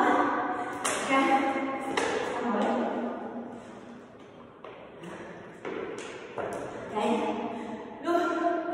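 A plastic water bottle being picked up off a hard floor, drunk from and set back down, giving a handful of sharp taps and knocks, several close together past the middle, amid a woman's voice.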